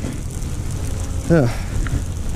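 Steady low wind rumble buffeting the camera microphone, with a light hiss of rain. A man's short "huh" comes just past halfway.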